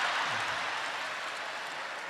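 Live audience applause that slowly fades away.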